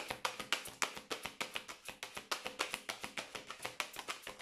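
A deck of tarot cards being shuffled by hand. The cards slap and riffle in a quick, even run of clicks, about eight a second.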